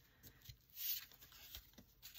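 Paper scraps being handled and moved by hand: a faint rustle that swells briefly about a second in.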